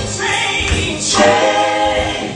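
A gospel praise team singing together, women's voices leading into microphones with a choir behind.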